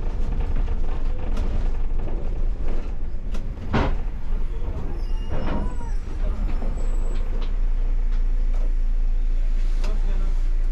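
Cabin noise of a MAN Lion's City city bus slowing to a stop: a steady low engine and road rumble, with a sharp short noise about four seconds in and a smaller one a little later. From about three-quarters of the way in the bus stands still and the sound settles into an even idling hum.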